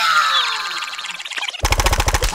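Cartoon sound effects: a loud yell that falls in pitch, then, about one and a half seconds in, a fast run of sharp pecking hits, about ten a second, as the big chick's beak strikes the red larva.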